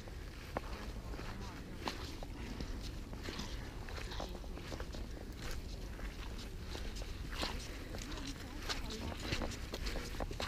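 Footsteps walking over a field of soil and young crops: irregular soft crunches and rustles, a few every second, over a steady low rumble.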